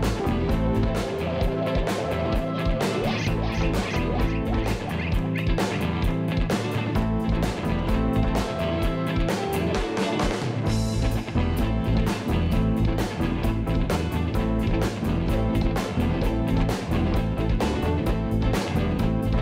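Live reggae band playing: drum kit with snare and cymbals, bass guitar and two electric guitars in a steady groove.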